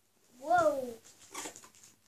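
A young child's wordless voiced exclamation, one drawn-out call that rises and then falls in pitch, followed by a short, quieter breathy noise.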